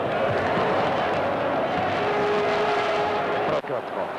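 Basketball arena crowd making a loud, steady din of many voices, with one steady held tone for about a second and a half near the end, before the sound dips suddenly.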